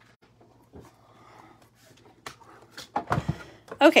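Soft clicks and rustles of craft supplies being handled, then a louder knock and low thump about three seconds in as the manual die-cutting and embossing machine is moved into place on the desk.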